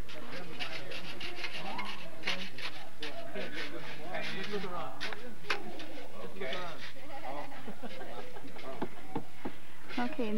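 Workers talking in the background at an outdoor building site, with short scrapes and knocks of shovels in sand and gravel scattered throughout.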